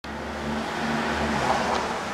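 1978 Hitachi Buil-Ace P rope-traction elevator car running: a low hum under a steady rushing ride noise, with the hum dropping away about a second and a half in.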